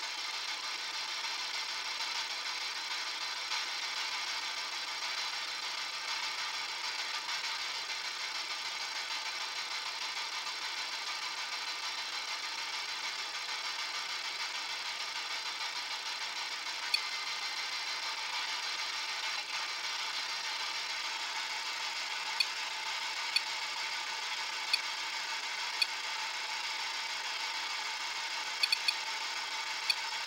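Steady background hiss with faint high whine tones in it, broken in the second half by a few separate sharp ticks and a quick cluster of ticks near the end.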